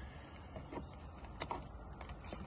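Faint handling noises of a plastic bait-loading tube and plunger worked by gloved hands: a few soft clicks and rubs over a low, steady rumble.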